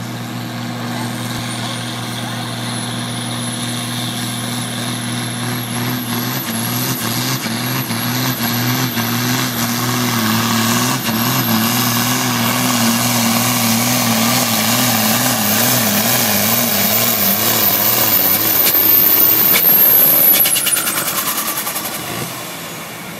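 John Deere farm tractor's diesel engine at full load pulling a weight sled, growing louder as it approaches, with a high turbo whistle climbing slowly in pitch and the engine note wavering as the load surges. Near the end the whistle falls and the engine drops off as the pull ends.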